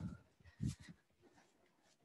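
A few soft, low thuds of bare feet landing on a yoga mat over a wooden floor as a person shakes and bounces. The clearest comes about two-thirds of a second in.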